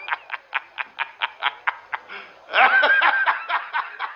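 A man laughing in a quick run of short "ha" beats, about four to five a second, with a louder, longer stretch of laughter about two and a half seconds in.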